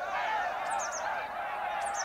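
A flock of geese honking, many overlapping calls at once. Brief high songbird chirps come in about two-thirds of a second in and again near the end.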